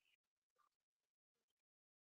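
Near silence: a muted audio feed, with only a few very faint, brief traces in the first second and a half before it goes completely dead.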